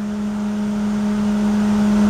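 Steady hum of the twin 11-inch SPAL electric cooling fans running, with the Corvette's small-block V8 idling underneath.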